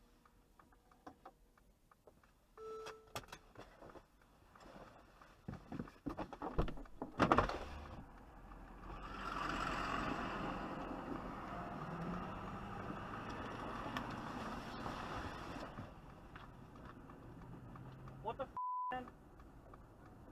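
Sounds from a dashcam stopped at an intersection just after a minor collision: scattered knocks and clicks, a louder clatter of knocks about seven seconds in, then a steady rush of traffic noise with indistinct voices. A short high beep comes near the end.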